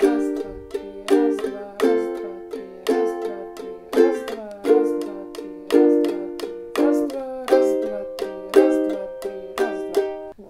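Signature-model soprano ukulele strummed with short downstrokes in an accented one-two-three, one-two-three, one-two pattern, with a strong stroke about once a second and lighter ones between. It moves through four chords, G minor, F, A♯ (B♭) and C minor, and each chord rings between the strokes.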